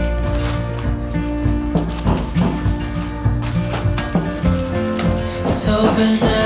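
Background music: a song with held tones over a bass line.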